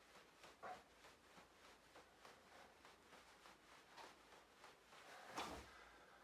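Near silence: room tone with a few faint soft ticks, and a brief rustle near the end as a body shifts on an exercise mat.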